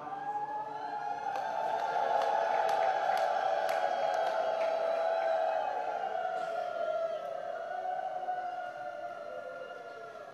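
A single long held tone with overtones, slightly wavering in pitch, that swells, holds and fades over about ten seconds. A few sharp clicks fall in the first few seconds.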